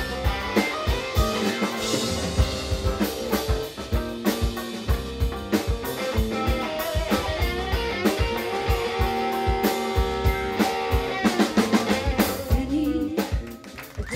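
Live band playing an instrumental passage: drum kit keeping a steady beat under electric guitar, bass and keyboard chords. The level drops briefly just before the end.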